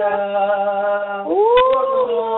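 Voices singing a hymn in long held notes over a telephone line, with a steady lower note beneath. About two-thirds of the way in, the upper voice slides up in pitch and holds.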